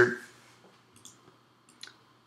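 Light clicks from working a computer: a faint click about a second in and a sharper single click near the end.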